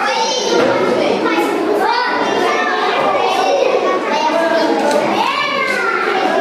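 A crowd of children talking and shouting over one another, loud and without a break, with high calls rising above the chatter.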